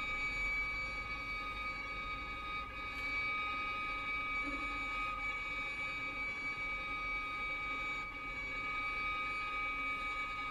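Contemporary chamber music: several high, steady tones held together without change, like a sustained drone, from a small ensemble of strings, piano and percussion with amplification.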